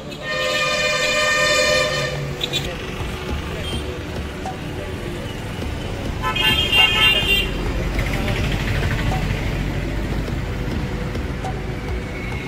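Vehicle horns honking twice over a steady low rumble of engines and road traffic. The first is one long, steady honk from about half a second in, lasting over a second. The second is a shorter, higher-pitched honk near the middle.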